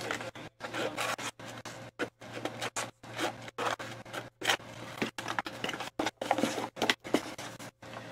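Irregular rubbing and scraping of something being handled by hand, in short stretches broken by brief silences.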